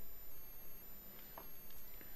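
Quiet room tone between sentences: a faint, steady high-pitched electronic whine over a low hum, with one small click about two-thirds of the way through.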